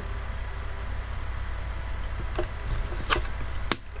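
Low steady hum with a few soft taps, then a sharper click near the end, as tarot cards are handled and one is laid on the table.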